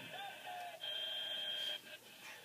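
Electronic tones from a handheld phone: a short wavering low tone, then a steady high-pitched beep lasting about a second.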